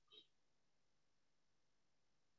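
Near silence, with one very faint, brief sound at the very start.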